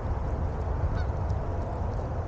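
A goose honks once, faintly, about a second in, over a steady low background noise.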